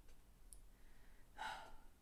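Near silence with a faint click about half a second in, then a man's soft sigh about one and a half seconds in.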